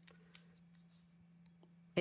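Faint rustling and a few light ticks from handling a piece of cardstock and a liquid glue bottle, most of them shortly after the start, over a low steady hum.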